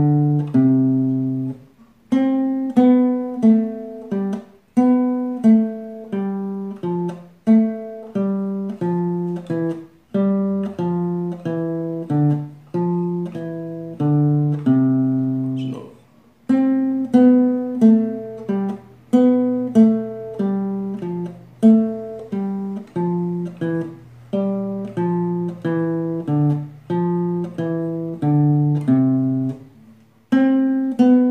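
Nylon-string classical guitar playing slow single plucked notes: a four-note pattern up the C major scale, played descending, with a short break between runs.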